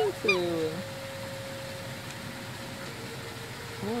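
A person's high voice saying a couple of words at the start, then a few seconds of steady outdoor background noise with a faint steady hum that fades out about three seconds in.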